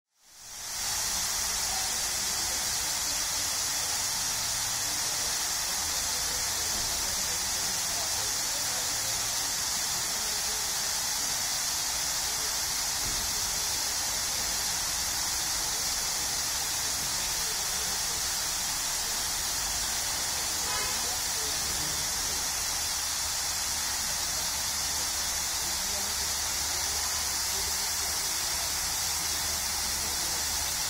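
Dandelion-hemisphere fountain nozzle spraying: many fine jets of water radiating from the centre and falling back into the pool as a steady hiss of spray, fading in at the start.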